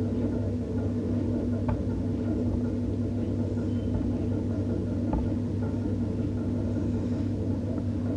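Steady low hum of background room noise, with two faint clicks, the first just under two seconds in and the second about five seconds in.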